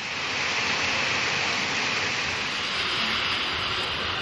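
Heavy rain falling steadily, an even hiss that swells up in the first half second.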